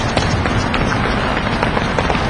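Many players' shoes tapping quickly on a court floor during a short, choppy-step footwork drill, a dense and steady run of overlapping footfalls.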